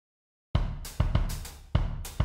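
Drum kit starting the opening theme music: after about half a second of silence, a run of sharp kick, snare and cymbal hits.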